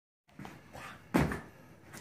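Creaks, faint knocks and one sharp clunk about a second in from a makeshift rope swing hung from a ceiling as a man swings on it.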